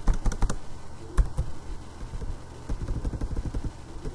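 Computer keyboard typing: a quick run of keystrokes at the start, a single sharp one about a second in, and a longer run of keystrokes near the end.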